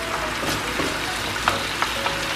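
Sauce with pork belly and onion sizzling in a nonstick frying pan as it is stirred with a wooden spoon, a little water just added so it simmers down to thicken. A few light clicks of the spoon against the pan.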